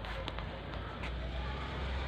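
Steady low background rumble, with a few faint light clicks in the first second.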